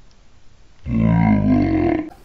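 A person's drawn-out, low-pitched vocal sound, like a grunt, lasting a little over a second and starting about a second in.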